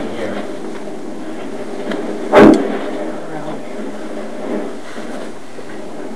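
Steady background hiss with faint low voices, broken by one loud, short thump about two and a half seconds in.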